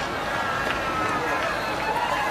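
Steady background murmur of an outdoor crowd, with a faint voice in the background.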